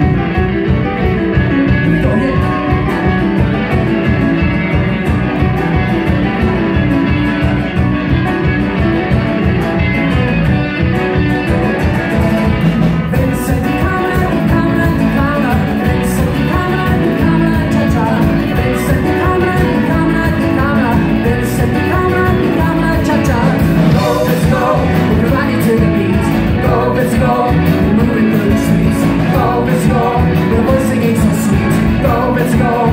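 Live band playing a Latin pop song: electric guitar, drum kit and keyboard keeping a steady beat, with singing joining partway through.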